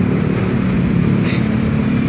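A steady low rumble of engine noise with a hum in it, loud and unbroken.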